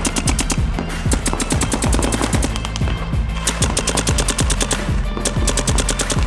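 Tournament paintball markers firing rapid strings of shots, many per second, thinning out briefly around the middle, over background music with a steady bass line.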